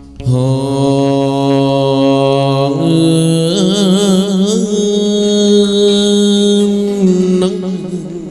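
A male hát văn (chầu văn) singer holding one long wordless sung note, its pitch stepping up twice, wavering in the middle, then dropping back near the end.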